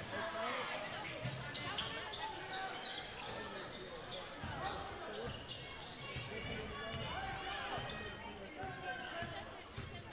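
Basketball being dribbled on a hardwood gym floor under steady crowd chatter in a large gym.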